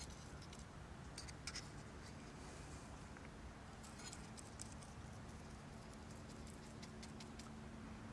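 A brush and a can of vinyl cement being handled while cement is dabbed into rivet holes: faint, scattered light taps and clicks, with a faint steady hum in the second half.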